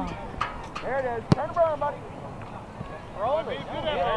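Voices calling out across a youth soccer field, in short shouts. A single sharp thump comes about a third of the way in.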